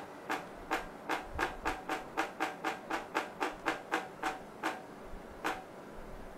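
Soundbrenner metronome beat clicks from its phone app and wearable vibration pulses, a quick run of short sharp ticks set by tapping in the tempo. They speed up to about four a second, then thin out and stop near the end.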